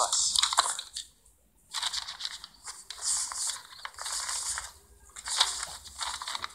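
Cloth and paper rustling and crinkling as a bundle is handled and unwrapped, in irregular stretches with a short pause about a second in and another near the end.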